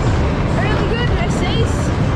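Steady heavy rumble and rush of a 1930-built speedway fairground ride spinning at speed, heard from a seat on the ride, with short high-pitched voices crying out around the middle.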